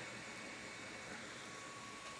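Faint, steady background hiss of a quiet workroom, with a faint thin steady tone; no distinct event stands out.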